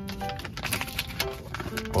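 Background music of soft sustained notes, with crackling clicks from a food packet being torn and peeled open by hand.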